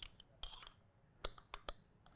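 A few faint, sharp clicks, spaced unevenly, with the loudest a little past the middle and two more close together soon after.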